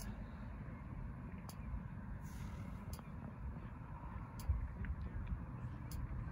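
Steady low rumble of outdoor background noise, with a few faint ticks and a brief hiss about two seconds in.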